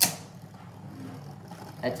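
Two Beyblade spinning tops clash on a plastic stadium floor with one sharp clack at the start, then keep spinning with a steady faint whir.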